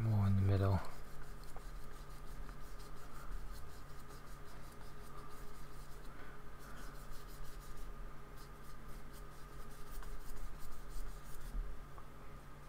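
A paintbrush scrubbing and stroking acrylic paint across the painting surface, heard as a soft, repeated scratchy rubbing. The strokes come quickest in the second half. A brief low hum from a man's voice comes right at the start.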